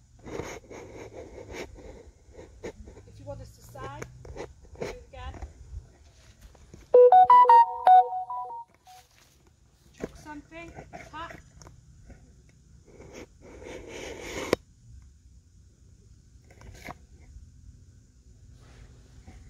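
A short electronic beeping tune, a few quick stepped tones lasting about a second and a half, sounding loudly about seven seconds in, over faint murmured voices.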